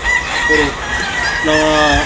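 Gamecock roosters crowing in the pens, one drawn-out crow held on a steady high note.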